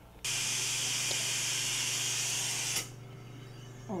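A steady hiss from dental equipment starts suddenly and cuts off after about two and a half seconds, over a low steady hum that carries on.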